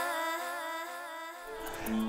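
Segment jingle music: a held, slightly wavering hummed note that fades out, with a low steady note of the next music bed coming in near the end.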